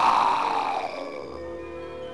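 A sudden growling sound effect, loud at first, that slides down in pitch and fades over about a second and a half, over background music.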